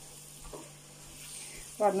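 Food frying in a pan, a quiet steady sizzle. It is a fry-up of canned fish being cooked.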